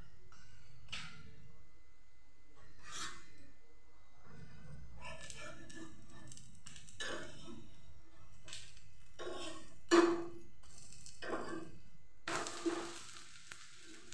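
A metal spatula scraping and tapping on a hot iron tawa as a moong dal chilla is loosened, with one sharp clack about ten seconds in. Near the end, oil sizzling on the griddle turns loud and continuous.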